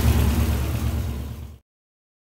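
1982 Toyota Corolla's engine idling with a steady low hum, still on its old Weber carburetor that runs rich and erratic. The sound cuts off abruptly about a second and a half in.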